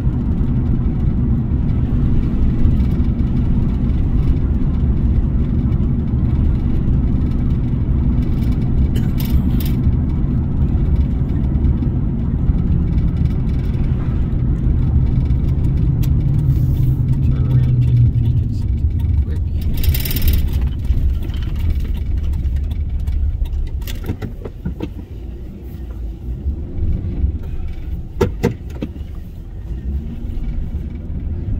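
Car interior driving noise: a steady low rumble of engine and tyres on the road. The engine note climbs for a few seconds past the middle and then falls away, and the rumble eases toward the end as the car slows.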